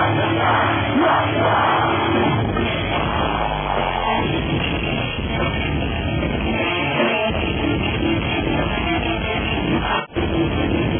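Metalcore band playing live at full volume, a dense, steady wall of electric guitars and band sound, recorded on a handheld camera's microphone from the audience.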